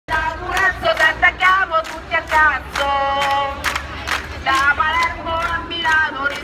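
A man singing a protest chant close to the microphone in short phrases, holding one long note about three seconds in, with crowd noise behind. Wind rumbles on the microphone.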